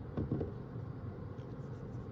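Quiet room tone with a few faint, short soft sounds: a couple near the start and one about midway.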